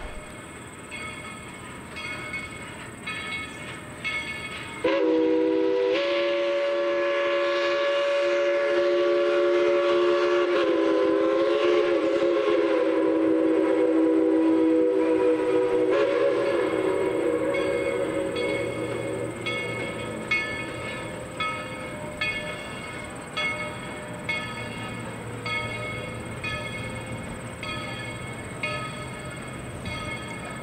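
A locomotive bell rings steadily. About five seconds in, a steam locomotive's chime whistle blows one long chord of several notes, dipping slightly in pitch midway, then fades out over the next ten seconds or so while the bell keeps ringing.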